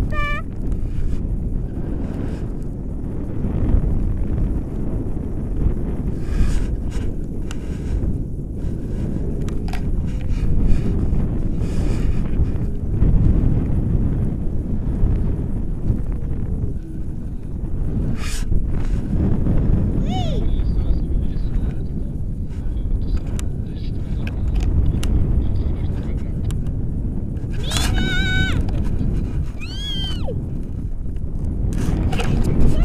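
Wind buffeting the microphone of a harness-mounted camera in paraglider flight: a steady low rush. Near the end comes a brief high-pitched sound that wavers in pitch.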